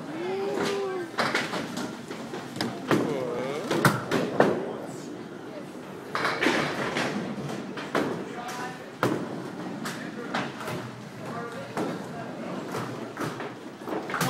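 Bowling alley noise: small bowling balls knocking down onto wooden lanes and pins clattering, a run of sharp knocks scattered throughout, over the chatter and calls of several people.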